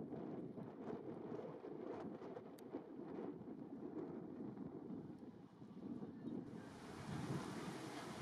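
Wind buffeting the microphone outdoors, a steady low rumble. About six and a half seconds in, a brighter hiss suddenly joins it.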